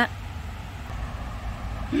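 Low, steady rumble of outdoor background noise, with a short laugh from a woman starting right at the end.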